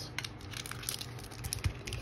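Small metal Pokémon card mini tin being handled and opened: a run of light clicks and taps of the tin and its lid, with faint crinkling of the foil booster packs being taken out.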